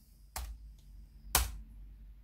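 Two laptop keyboard key presses about a second apart, the second louder. The second is the Enter key that runs the corrected command.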